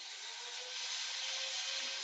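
Steady background hiss with a faint hum of a few steady tones, growing slightly louder.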